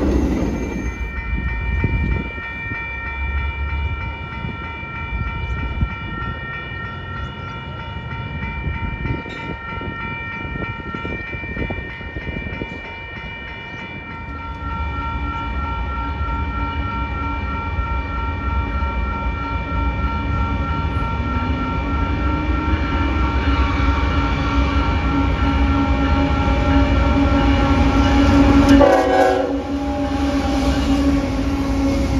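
Railroad grade-crossing bells ringing steadily while a Union Pacific freight train approaches. The rumble of its diesel locomotive grows louder and peaks as the locomotive passes near the end.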